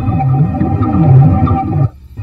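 Live experimental electronic improvisation: low synthesized tones that swoop down and back up in pitch about every three-quarters of a second over steady held drones, cutting out abruptly near the end.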